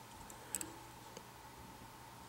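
A few faint, short clicks from fingers handling a fly on the hook in a fly-tying vise: a quick double click about half a second in and a smaller one a moment later, over a faint steady hum.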